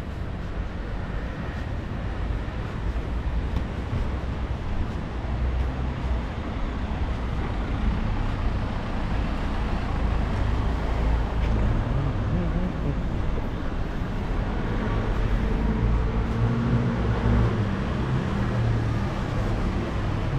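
Steady vehicle noise: a low rumble under a broad hiss, growing a little louder through the second half.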